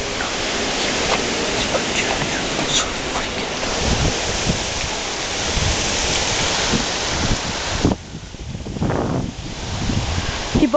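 Wind buffeting the hat-mounted camera's microphone: a steady rushing noise that drops away suddenly about eight seconds in.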